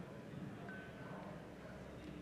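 Faint room tone with a low steady hum, and a brief faint high tone a little under a second in.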